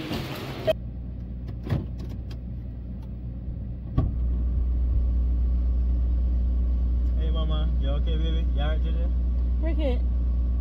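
Car engine heard from inside the cabin: a click about four seconds in, then a steady low idle hum, after a quieter stretch with a few clicks. Faint voices come in near the end.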